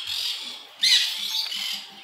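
Parrots squawking with harsh, grating screeches, the loudest call starting just before a second in and dropping in pitch.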